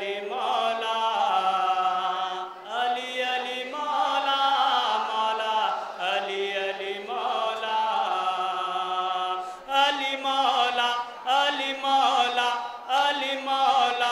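Male voice chanting a nauha, the Shia Muharram lament, in long held and gliding melodic lines, amplified through microphones, with a second man's voice joining in.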